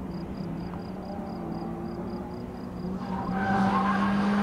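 BMW E46 saloon's engine running hard under load as the car is driven sideways through a cone course, with tyre squeal. About three seconds in, the engine note gets louder and higher tones come in.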